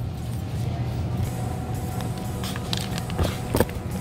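Supermarket room tone: a steady low mechanical hum, with a couple of sharp knocks about three and a half seconds in.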